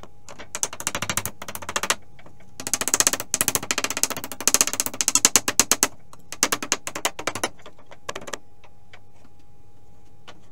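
Hammer striking the wooden subfloor boards and their nails as they are knocked loose, sped up so the blows come as fast rattling runs of knocks in several bursts that stop about eight seconds in.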